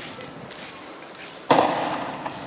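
Faint street noise, then about one and a half seconds in a single loud, sharp bang that rings out briefly.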